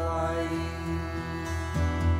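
Slow traditional Irish lament between sung lines: a shruti box holds a steady drone under an acoustic guitar, with a new strummed chord a little before the end.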